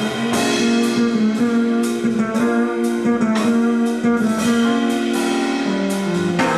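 A live jazz trio of keyboards, fretless electric bass and drum kit is playing. Held keyboard chords sit over a plucked bass line, with cymbal strokes keeping time.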